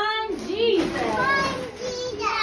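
Young children's excited voices, high-pitched and sliding up and down, calling out without clear words.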